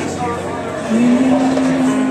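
A man's voice, amplified through a PA, holding one long steady sung note over a karaoke backing track, the note starting about a second in.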